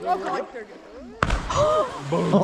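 A person jumping from a rock ledge about 30 feet up hits the river a little over a second in, making a sudden heavy splash that lands almost as a belly flop. The spray hisses on after the splash, with voices.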